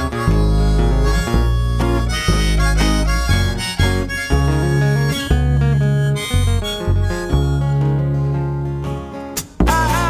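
Live harmonica solo over strummed acoustic guitar and upright bass. The band drops out briefly shortly before the end, then comes back in strongly.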